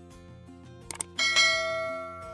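Subscribe-button animation sound effects over quiet background music: a quick double mouse-click about a second in, then a bright notification bell chime that rings out and slowly fades.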